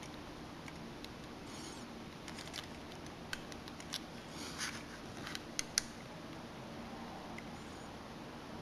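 Small sharp clicks and brief scratches of a precision screwdriver tip working at the plastic ribbon-cable connector latches on a compact camera's circuit board, flipping them open. A run of light ticks and scrapes starts about two seconds in and ends with two sharper clicks close together just before six seconds.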